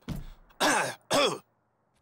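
A cartoon character's voice hemming and clearing his throat: a brief low sound at the start, then two short 'ahem'-like bursts about half a second apart.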